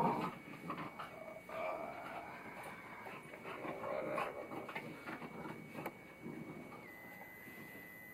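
A foxhound and a beagle scrambling about on a bed over a person, making excited dog noises amid rustling bedding, with a sharp bump right at the start.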